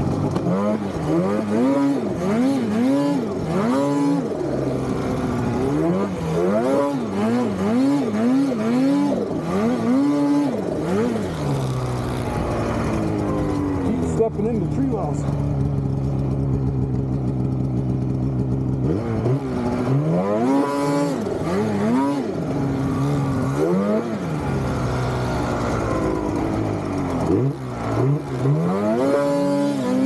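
Snowmobile engine revved in short repeated bursts as the rider works the sled free where it is stuck in deep snow. The engine holds a steadier note for several seconds midway, then the bursts of revving resume.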